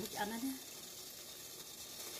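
Steady, faint hiss from a steamer pot of boiling water on its burner, with a brief voiced sound near the start.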